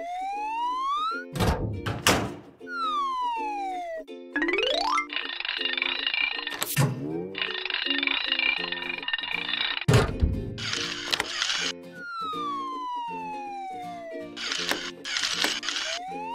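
Cartoon background music with a repeating bouncy bass pattern, overlaid by cartoon sound effects: whistle-like rising and falling glides, a few thuds, and long hissing, sparkling stretches.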